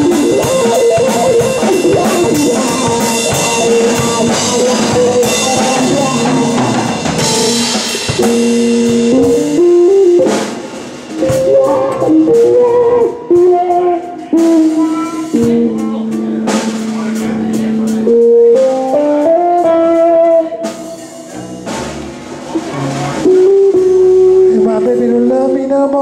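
Live instrumental music: a two-handed tapped Stick-type touch instrument plays held melody notes that step up and down, over a drum kit.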